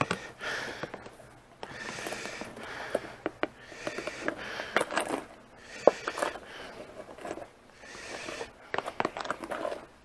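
A kitchen utensil scraping meringue out of a bowl and spreading it over a baked apple bread pudding in repeated scratchy strokes of about a second each, with a few sharp clicks of metal against the dishes between them.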